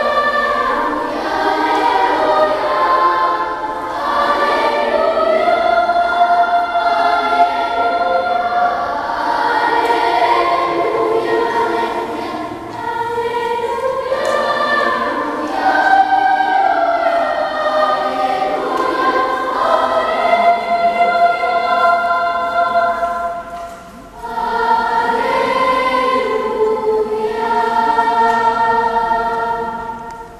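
Children's choir singing a sacred piece in held, sustained lines. The singing drops off briefly about four-fifths of the way through, then resumes.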